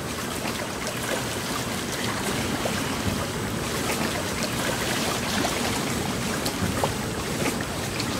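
Water lapping and washing against a rocky shoreline, a steady rush with small scattered splashes, with some wind noise on the microphone.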